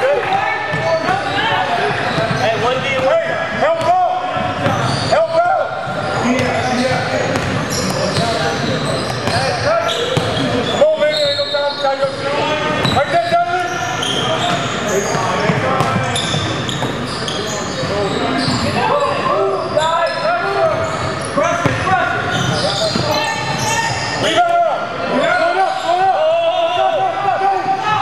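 Basketball game on an indoor court: the ball bouncing on the hardwood as it is dribbled, mixed with players and spectators calling out and talking, all echoing in a large gym.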